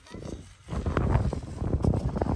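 Wind buffeting the microphone as a low, uneven rumble that comes in about half a second in, after a brief lull.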